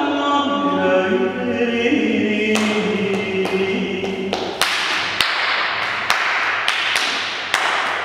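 Long, held chanted vocal tones that step down in pitch and fade out about four and a half seconds in. Overlapping with and then following them, a run of sharp taps about every half second, with a hiss between them.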